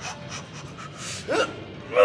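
A weightlifter's hard breathing during a set of seated cable rows, with a short voiced grunt about a second and a half in.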